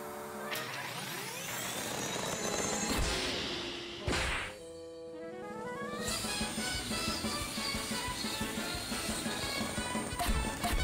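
Cartoon slapstick music with sound effects: a long rising sweep builds to a crash-like impact about four seconds in. A quick run of notes follows, leading into a brisk, rhythmic musical passage.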